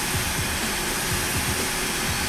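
Electric heat gun blowing hot air steadily onto the nose of a hydraulic valve's thermal switch, a constant rush of air.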